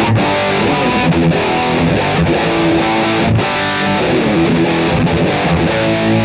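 Ibanez electric guitar played through an overdriven amp, a loud run of sustained chords and single notes, with the Boss EQ-200 set flat.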